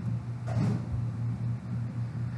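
A steady low hum with a background hiss.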